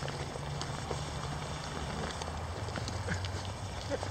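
A dog's claws clicking and scrabbling irregularly on pond ice, over a steady low rumble.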